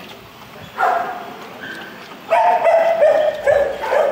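A dog whining: a short whine about a second in, then a longer, steady whine from a little past halfway to near the end.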